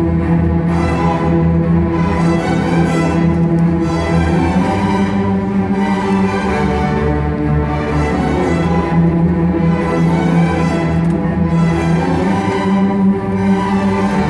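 Middle school string orchestra of violins, violas, cellos and double basses playing loudly, with steady sustained low notes under upper parts that swell and drop back about every two seconds.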